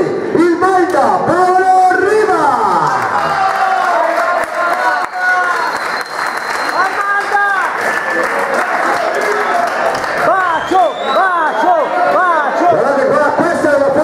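A room full of people talking over one another, with applause.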